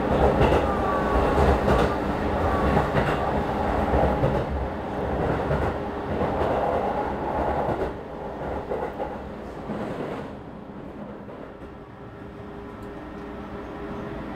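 Running noise of a JR East 215 series double-deck electric train, heard from inside the passenger car: a steady low rumble of wheels on rail. It gets quieter about eight seconds in and again about ten seconds in.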